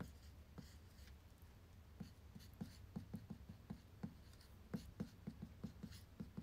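Faint, irregular light taps, two to four a second, over a low steady hum.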